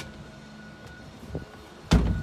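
Walk-through windshield door on a boat's console shut with a loud slam near the end, after a lighter knock a moment before.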